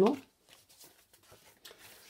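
Faint rustling and light tapping of card stock and paper being handled on a cutting mat, a little louder near the end.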